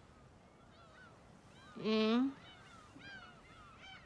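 A woman's whimpering sob: one nasal wail about half a second long, about two seconds in, rising slightly in pitch. Faint high chirps run in the background.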